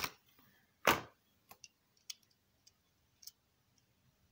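Handling noises from a small diecast toy car and its clear plastic packaging. There is one louder knock about a second in, then faint clicks roughly every half second.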